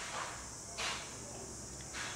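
Quiet room tone with one soft, brief handling sound a little under a second in, a plastic syringe and needle cap being handled in the fingers.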